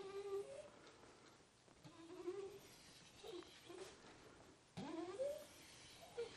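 Faint squeaks of a pen dragging across an interactive whiteboard screen as circles are drawn: about four short squeaks, each sliding in pitch.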